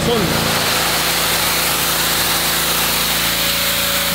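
Pressure washer running steadily: a constant motor drone under the hiss of the high-pressure water jet striking concrete.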